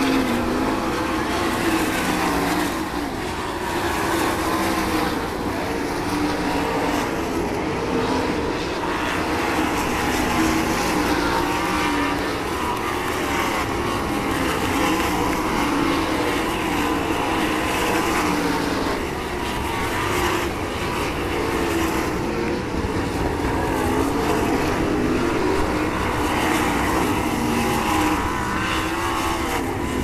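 Pack of 410 sprint cars' V8 engines running laps on a dirt oval, a continuous loud engine howl whose pitch keeps rising and falling as the cars accelerate and lift around the track.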